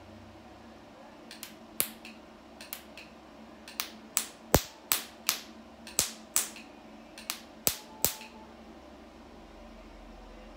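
Picosecond laser handpiece firing pulses against facial skin: sharp snaps, about a dozen and a half in irregular runs, several a second in the middle and stopping near the end. A faint steady hum runs beneath them.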